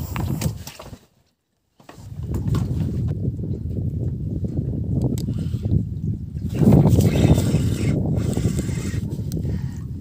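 Wind buffeting the microphone on an open boat: a steady low rumble that drops to silence for under a second about a second in and grows louder for a moment around the seven-second mark.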